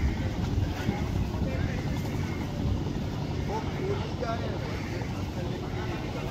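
Steady low outdoor rumble, with faint voices of people talking in the distance about midway through.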